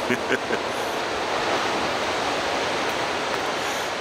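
Distant surf breaking along an open ocean beach: a steady, even rushing wash.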